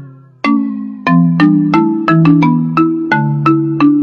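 A ringtone-style melody of struck mallet notes in a marimba-like tone. After a brief pause near the start it plays a quick run of about a dozen notes, each ringing and fading.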